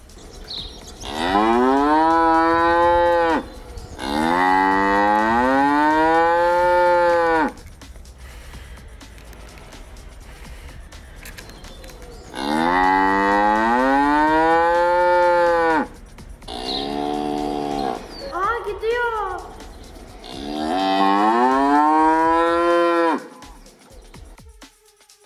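Cow mooing: four long, loud moos, each rising and then falling in pitch, with a shorter, wavering call between the last two.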